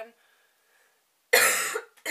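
A woman coughs once, loudly and harshly, a little after halfway through, following a brief hush. The cough comes from a sore throat: she is ill with a cold.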